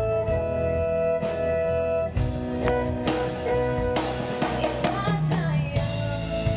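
A live country band playing, with drums, guitars and fiddle; a woman's singing voice comes in near the end.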